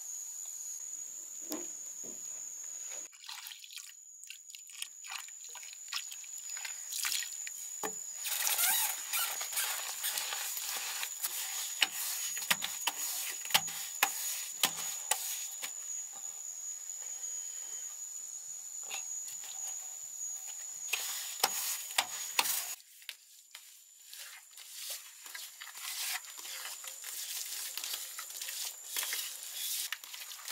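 Wet slaps, scrapes and small clicks of bare hands mixing and spreading cement mortar, dense after a quieter start. Behind them runs a steady high-pitched insect buzz that stops about three-quarters of the way through.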